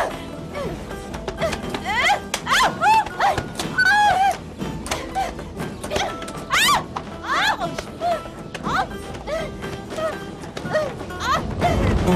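Women yelping and shrieking in many short rising cries as they scuffle and pull each other's hair, with a few thuds of the struggle, over background music.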